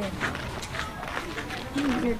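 Footsteps on a dusty, gravelly dirt road: short, even scuffs at a walking pace, about two to three a second. A voice speaks briefly near the end.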